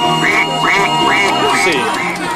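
A quick run of about five duck-like quacks over background music.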